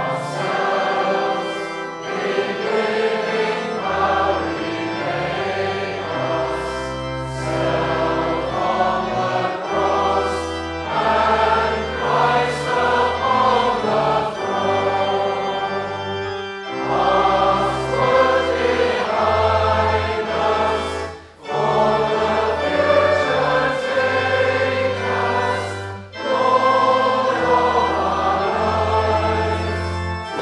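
A choir singing a hymn verse over sustained low bass notes of instrumental accompaniment. There are brief breaks between lines about 21 and 26 seconds in.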